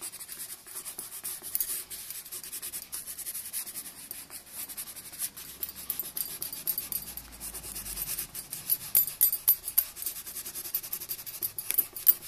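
Coloured pencil shading on paper: a run of quick, scratchy back-and-forth strokes that grows louder in the last few seconds.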